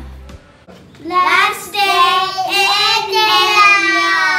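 Background music ends just after the start; then, about a second in, several young children sing out together in high voices, holding long notes.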